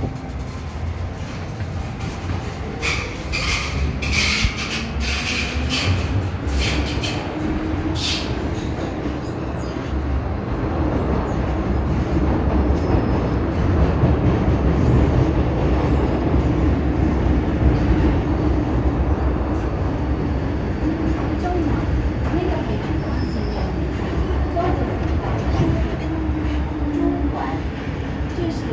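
MTR M-Train metro car heard from inside, running through a tunnel: a steady wheel-and-track rumble with a motor tone that rises in pitch as the train gathers speed and then holds. A few clicks and squeals come in the first seconds, and the noise eases near the end as the train slows into the station.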